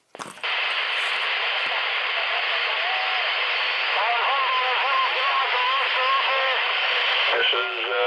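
CB radio receiving on channel 36 (27.365 MHz): heavy static hiss switches on suddenly, and from about three seconds in a faint, wavering voice of a distant station comes through it, barely readable over the noise.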